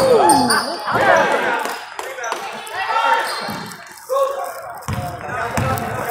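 A basketball bouncing on a hardwood gym floor during play, with players and spectators shouting.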